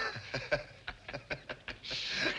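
A man laughing softly: a quick run of short chuckles.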